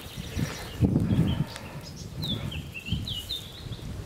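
A bird chirping a quick string of short high notes, starting about two seconds in, over a louder low rumble about a second in.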